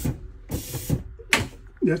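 Air-brake system of a school bus: a click, then a half-second hiss of air as the brake pedal is worked, then another short sharp click. The system is low on air pressure.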